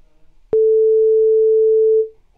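A single steady electronic beep tone, starting sharply about half a second in and held for about a second and a half: the exam listening recording's signal tone before the excerpt is played again.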